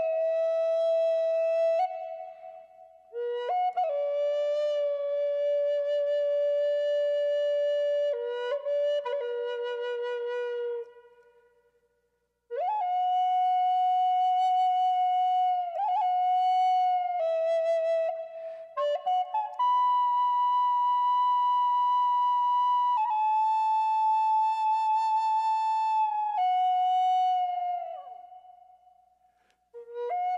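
Wooden Native American-style flute playing a slow, unaccompanied melody of long held notes. It plays two long phrases with a pause of about a second and a half between them. The last note bends down and fades out near the end.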